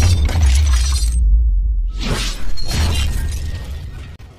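Glass-shatter sound effects over a deep bass rumble: one crash dies out about a second in, and a second crash hits at about two seconds and fades away toward the end.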